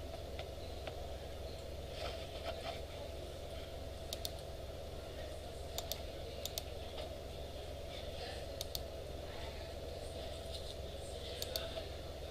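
Faint, scattered clicks of a computer mouse and keyboard, one or two every second or so, over a steady low room hum.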